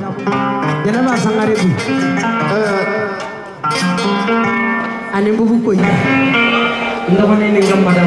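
A live band playing, with a plucked guitar line and a voice over the music. The music drops briefly about halfway through, then comes back in.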